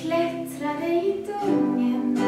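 A woman singing a slow song live, accompanying herself on acoustic guitar.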